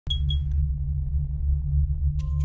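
Synthesized intro sound effect: a deep, steady rumbling drone, opening with two short high pings in quick succession.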